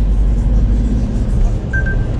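Low steady rumble of a small Smart ForTwo car driving, heard from inside the cabin, with background music.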